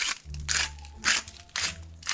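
Hand salt grinder being twisted over a tray of vegetables: a quick, irregular run of crunching clicks as the salt is ground.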